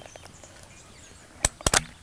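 Sharp metallic clicks from an Air Arms TX200 underlever spring-piston air rifle being cocked and loaded: one click about one and a half seconds in, then a quick cluster of three close together.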